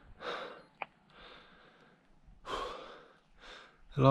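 A man's breathing close to the microphone: about four faint breaths, each about half a second long, with a short sharp click about a second in.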